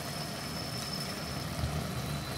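Steady low hum from the glass-top cooktop heating a pot of drumstick curry, with a faint high-pitched whine that stops about one and a half seconds in; the curry simmers quietly underneath.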